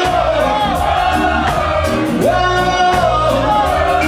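Live reggae band playing, with a voice singing over a steady bass line and regular drum and cymbal strokes.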